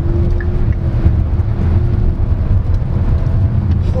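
Inside the cabin of a Lynk & Co 01 PHEV under hard acceleration: its 1.5-litre turbocharged three-cylinder plug-in hybrid drivetrain pulling, heard as a loud, steady low rumble with road and wind noise and a faint steady drone over it.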